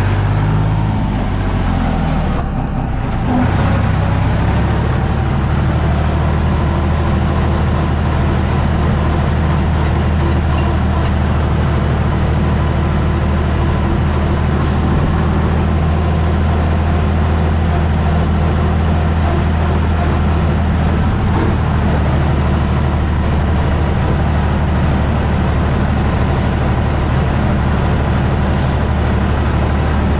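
Tractor diesel engine running steadily while the tractor drives on the road, heard from inside the cab. Its note dips and shifts briefly between about one and three and a half seconds in, then holds steady.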